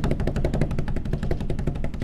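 Drum roll sound effect: rapid, even drum strokes, about a dozen a second, over a low rumble, played for suspense.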